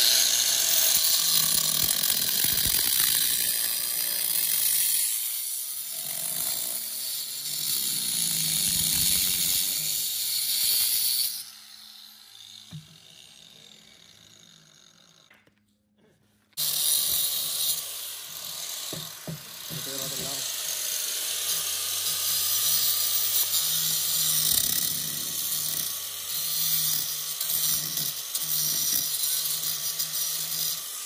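Handheld angle grinder dry-cutting a concrete paver, a loud, steady, hissing grind. The grinding dies away after about eleven seconds and there is a short gap. It starts again suddenly about halfway through and runs steadily.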